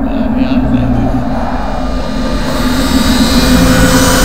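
Horror-film sound design: a loud, steady low rumbling drone that swells, with a rising hiss building over the second half.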